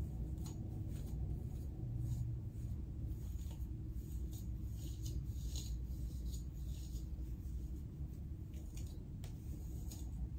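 Faint, irregular scratchy strokes of a comb raking through the kinky hair of an afro wig, over a steady low hum.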